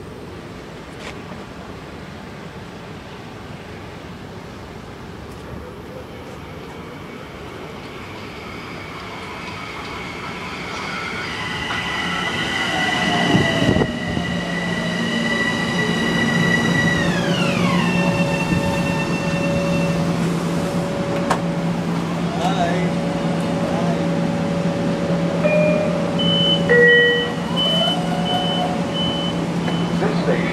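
Metro-North M7 electric multiple-unit commuter train pulling into the station and braking to a stop. As it draws alongside, its traction motor whine holds steady, then slides down in pitch as it slows. Once stopped it settles into a steady hum, with a few short electronic beeps near the end.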